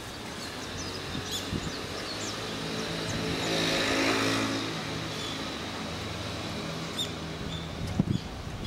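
A car driving past on the street, its engine hum and tyre noise building to loudest about four seconds in and then easing off. Small birds chirp now and then.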